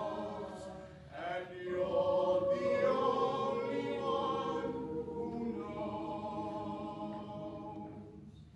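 Mixed-voice school choir singing unaccompanied in sustained chords, with a short break about a second in, swelling louder in the middle and fading softer near the end.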